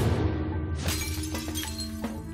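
Dramatic trailer score over a steady low drone, with a sharp hit at the start and a shattering crash about a second in that leaves a high ringing tail.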